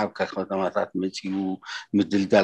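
Speech only: a man talking, with short breaks between phrases.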